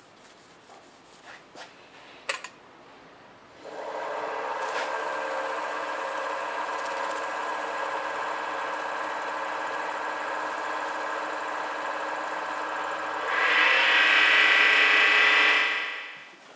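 A few soft handling clicks, then a small wood lathe starts about a third of the way in and runs steadily with a many-pitched whine, spinning a bocote pen blank. Near the end a louder rubbing hiss joins it as a paper towel is pressed against the spinning blank to apply finish.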